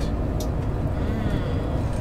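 Steady low rumble of a moving bus heard from inside the cabin: engine and road noise.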